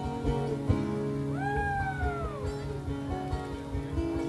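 Live band music: acoustic guitar, electric guitar and a drum kit playing together. About a second in, one long gliding note rises quickly and then falls slowly over more than a second.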